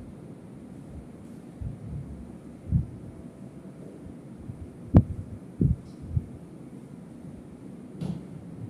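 A marker working on a whiteboard: a few dull, low knocks as it is pressed and tapped against the board, with one sharper, louder tap about five seconds in, over quiet room tone.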